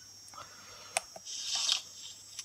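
A click about a second in, then a short, crunchy, rattling rifle reload sound effect played through a small speaker by the blaster sound board, its reload sound for the 98 Mauser mode.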